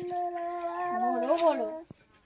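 A single long, drawn-out call held on one pitch, then wavering up and down before it stops shortly before the end.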